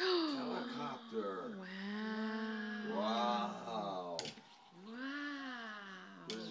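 A person's voice making drawn-out wordless sounds: a falling cry at the start, long held tones through the middle, and a rise-and-fall near the end.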